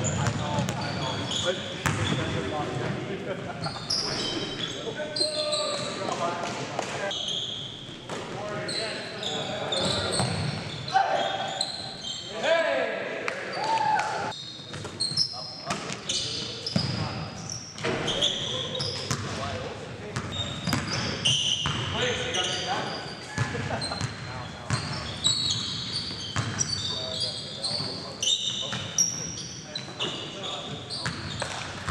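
Live sound of an indoor basketball game: a basketball bouncing on the hardwood gym floor, short high sneaker squeaks and indistinct players' voices echoing in the hall.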